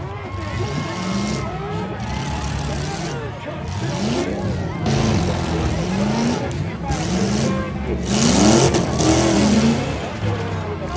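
Several demolition-derby pickup trucks' engines revving up and down as they push against one another, under crowd shouting. About eight seconds in the sound swells into a louder rushing burst as a truck's wheel spins and throws dirt.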